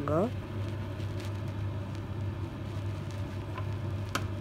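Butter starting to melt in a hot non-stick pan: a faint sizzle with a few small crackles, over a steady low hum.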